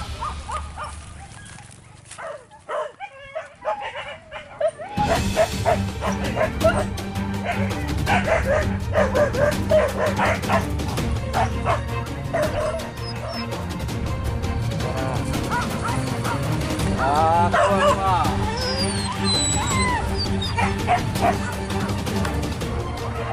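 A group of leashed hunting dogs barking, yelping and whining, with the calls coming thick and fast after about five seconds.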